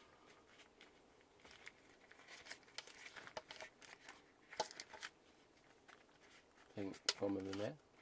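Baking paper crinkling and rustling in short, irregular bursts as pizza dough is rolled up on it by hand.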